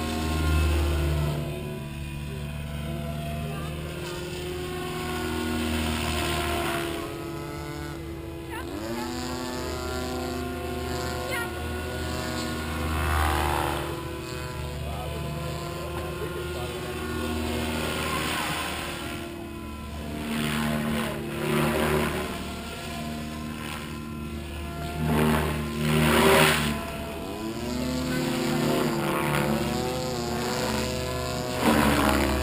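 Goblin 700 electric RC helicopter flying aerobatics: rotor blades and motor whine running steadily, with the pitch sweeping down and back up several times as it passes and turns, and growing louder in swells.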